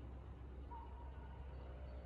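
Faint outdoor background: a steady low rumble, with a faint thin whistle-like tone about a second in.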